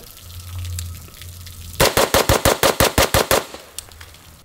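CMMG Banshee AR-style pistol in 4.6x30mm firing a fast string of about a dozen semi-automatic shots, about eight a second, starting about two seconds in: a magazine dump.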